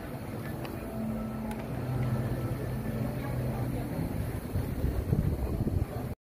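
A steady low mechanical hum with faint background voices.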